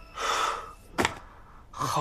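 A young man's sharp gasp, a quick breathy intake of surprise, followed about a second later by a short click.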